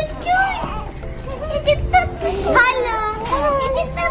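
Several young children chattering and squealing in high voices, over background music.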